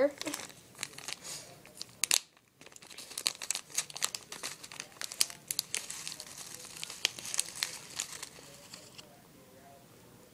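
Plastic food packet crinkling as it is handled to get the food out: a dense run of crackles with a short gap about two seconds in, stopping about a second before the end.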